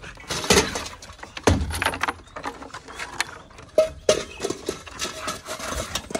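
Dog pushing and tipping its stainless steel water bowl, the metal bowl clanking and scraping against wooden pallets in a series of sharp knocks with rattling between them.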